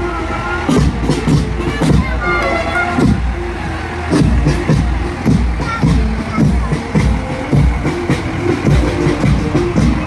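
Marching band playing on the parade route, drums keeping a steady beat under sustained notes.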